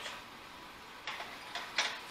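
A few short scraping clicks of a steel card scraper being handled at a bench vise, in the second half of an otherwise quiet moment, the loudest near the end.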